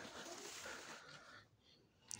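Near silence: a faint background hiss that cuts out about one and a half seconds in.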